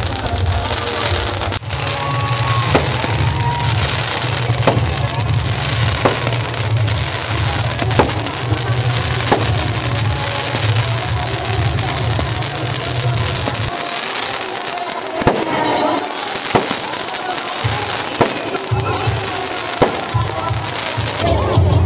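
Fireworks going off: repeated sharp bangs and crackling from firecrackers and aerial shell bursts. Music with a steady deep bass plays underneath; the bass drops out for a few seconds near the end.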